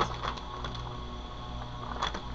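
Faint clicks and rustling from a wax-melt package being handled, a few small ticks near the start, over a steady low room hum.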